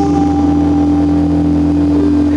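Live blues band holding a sustained note. An electric guitar note rings steadily over a low, held bass note.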